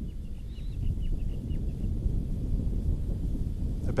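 Outdoor ambience of low wind rumble on the microphone, with a run of short, faint, high bird chirps in the first second and a half.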